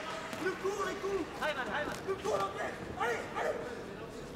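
Indistinct shouting voices from ringside during a kickboxing bout, continuing in short calls throughout, with no clear strikes heard.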